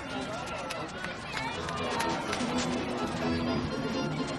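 Voices of spectators at a ballpark, with music from the stadium's loudspeakers starting about halfway through and getting a little louder.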